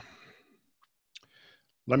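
A short pause in a man's speech: a faint breathy exhale trailing off, a single short click a little after one second in, then the voice starting again just before the end.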